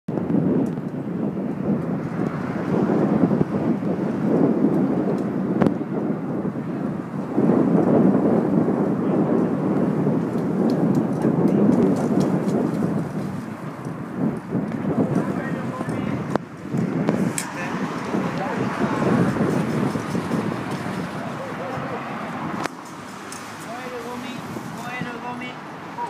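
Wind buffeting a handheld phone's microphone: a heavy, uneven rumble that rises and falls and eases off sharply near the end, with scraps of talk underneath.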